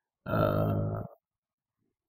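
A man's drawn-out 'aah' hesitation sound, held at one steady pitch for under a second and softer than his speech.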